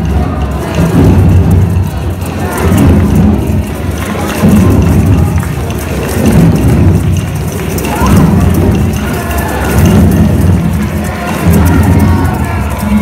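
A large group playing hand drums together, loud and dense, the sound swelling and falling every second or two, with voices over it.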